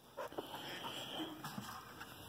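Faint sounds from a border collie as it breaks away and runs off, a few soft short noises in the first second over quiet outdoor background.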